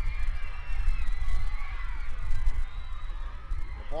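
Wind buffeting the pitchside microphone as a steady low rumble, with faint distant crowd voices over it.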